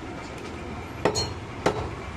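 A butcher's knife chopping into a goat head on a wooden block: two sharp strikes a little over half a second apart, the first with a short metallic clink.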